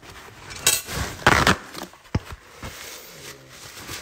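Handling noises: rustling and knocking of things being moved about, with two louder noisy bursts in the first second and a half and a sharp click about two seconds in.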